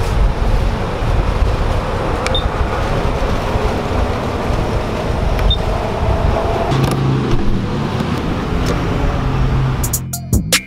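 Steady rumble of traffic and vehicles at a gas station forecourt, with two short high beeps from the fuel pump's buttons a few seconds apart and a low steady hum in the last three seconds.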